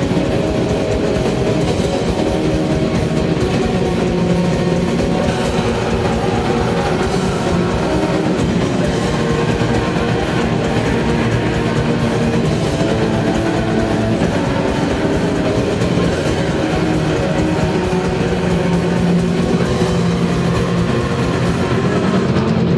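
Live doom/black metal band playing loud: distorted electric guitars holding dense sustained chords over drums, an unbroken wall of sound.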